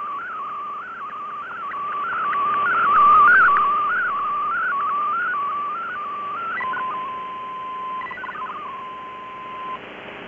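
MFSK64 digital-mode signal from a shortwave broadcast, heard through a receiver with band-limited hiss: a warbling tone that wavers up and down in pitch while it carries picture data. About two-thirds of the way in, the picture transfer ends and the sound becomes a steady tone, broken briefly by a quick run of stepping tones.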